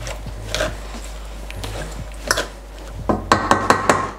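Wooden spoon stirring and scraping thick, crumbly choux pastry dough in a stainless steel pot as an egg is worked in, with a few sharp knocks of the spoon against the pot.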